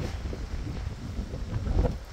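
Gusty wind buffeting the microphone: an uneven low rumble that swells shortly before the end.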